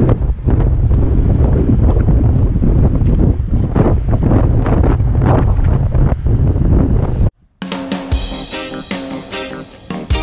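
Strong wind buffeting the microphone, a heavy low rumble with gusts, so windy that everything shakes. About seven seconds in it cuts off suddenly, and after a short gap a guitar music track begins.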